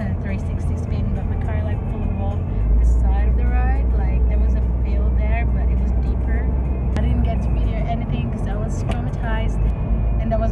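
Steady low rumble of a car driving, heard from inside the cabin, growing louder about two and a half seconds in, under a woman talking.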